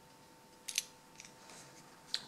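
A few small metal clicks as the core of a Miwa 3800 magnetic lock is worked out of its cylinder and its tiny pins come loose. The loudest is a quick double click about two-thirds of a second in, followed by a few fainter ticks.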